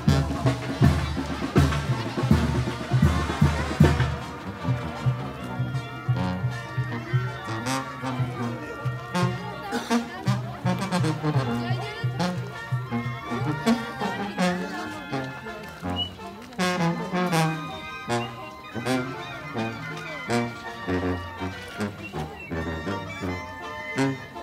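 Brass band playing a slow melody. Heavy drum beats fill the first few seconds and then drop away, leaving the horns to carry the tune.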